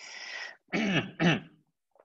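A man clearing his throat: a short breathy rasp, then two quick voiced bursts.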